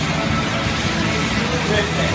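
Fan air bike whirring steadily as its fan is driven hard by the arms alone, with music playing underneath.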